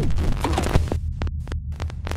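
Digital glitch sound effects over a deep, steady bass drone, with repeated short crackling bursts of static cutting in and out.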